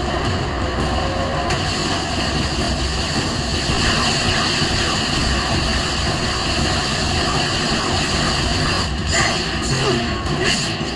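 Cartoon action-scene sound mix: dramatic background music over a steady engine rumble from a flying aircraft, with weapon-fire effects as robots open fire.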